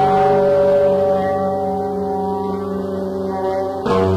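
Rock band recording from a cassette transfer: a guitar chord held and ringing, slowly fading, then a fresh strum near the end as the guitar and bass come back in.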